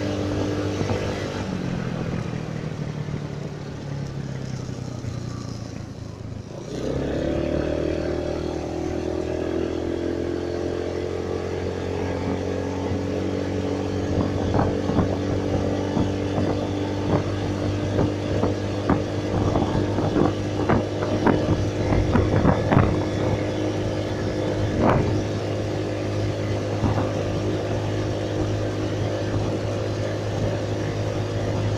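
Small motorcycle engine heard from the rider's seat while riding. Its pitch falls as it slows over the first few seconds, then about seven seconds in the throttle opens and the engine climbs and settles into a steady cruise. Short knocks and rattles come and go through the middle stretch.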